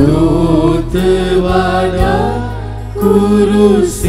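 Hymn sung over sustained instrumental accompaniment, a melodic vocal line over steady held low notes; a louder phrase begins right at the start and another about three seconds in.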